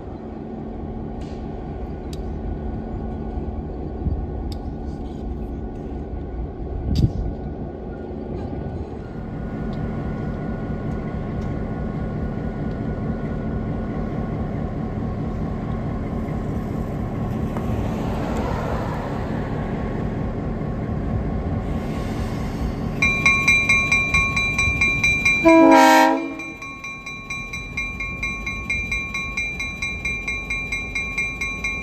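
Conway Scenic Railroad diesel locomotive 1751 running and moving slowly, its engine a steady low drone. About 23 seconds in the locomotive bell starts ringing in quick, even strokes, and near 26 seconds a short, loud horn blast slides downward in pitch.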